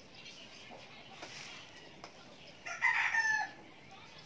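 A rooster crowing once, a single call of under a second about three seconds in, with its pitch dropping at the end.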